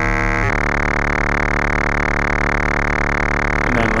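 Doepfer A111-1 VCO's sine carrier under audio-rate exponential FM from a second sine VCO, giving a steady, inharmonic tone rich in sidebands. About half a second in the timbre changes abruptly as the modulating oscillator is switched down one octave, then holds steady.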